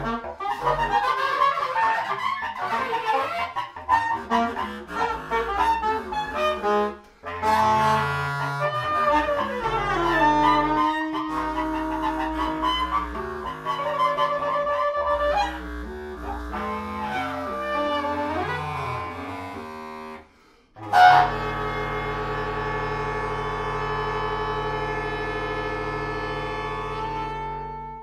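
Saxophones in free improvisation: fast, jagged overlapping runs for the first several seconds, then long held and sliding tones. After a brief near-silent break about twenty seconds in, a sudden loud attack opens a steady held chord of several pitches.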